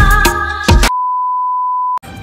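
Music with a beat, cut off suddenly just under a second in and replaced by a single steady pure beep tone, an edited-in bleep sound effect held for about a second.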